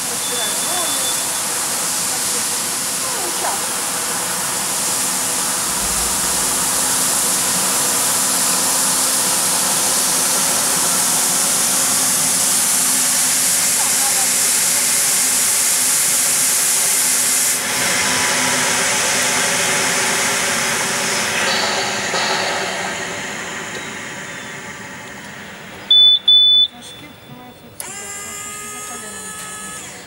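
Fiorentini EcoSmart ride-on floor scrubber running: a steady, loud hiss from its suction motor and the rotating disc brushes scrubbing the wet floor, with a low steady hum underneath. The noise eases off in the last few seconds, and a short high beep sounds near the end.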